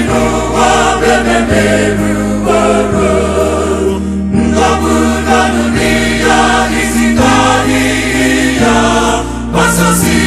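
A mixed church choir sings a gospel song in Igbo, many voices in harmony over low held bass notes that step to a new pitch every second or two.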